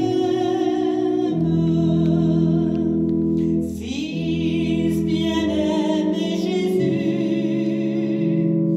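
A woman's voice singing a hymn with vibrato over held instrumental chords, which change every second or two, with a short break in the sound just before the middle.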